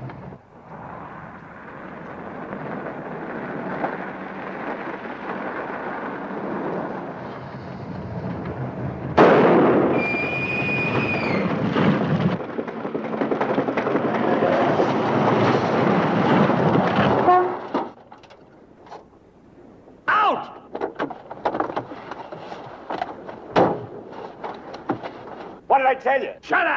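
A car being driven hard on a rough road, its running noise building steadily. About nine seconds in comes a sudden loud bang and a brief high squeal: a tyre blowing out, leaving the car with a flat. The car's noise cuts off abruptly a few seconds later as it stops, and scattered knocks and clatter follow.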